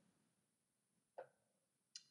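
Near silence, with one faint, very short sound a little past a second in.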